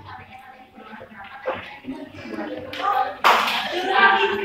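Indistinct voices talking in the background of a room, with a sudden short burst of noise a little past three seconds in that is the loudest sound.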